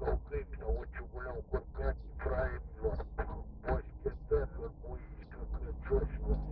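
A voice in quick short syllables, several a second, over the low steady rumble of a car cabin.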